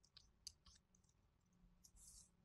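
Near silence broken by about four faint, sharp clicks, the sound of working a computer's mouse, keys or drawing pen while switching tools and drawing.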